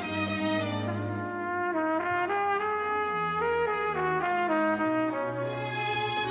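Solo trumpet playing a slow melody that moves note by note and sinks lower toward the end, over a sustained orchestral string accompaniment; the fuller string section comes back in near the end.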